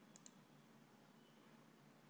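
Near silence: faint room tone, with a faint computer-mouse click, a quick press and release, just after the start.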